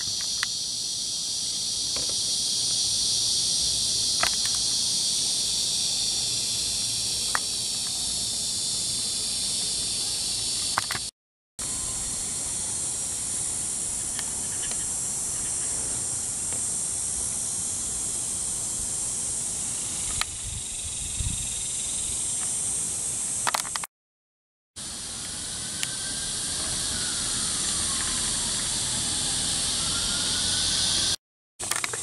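Steady, high-pitched buzzing of an insect chorus, broken twice by a brief moment of silence.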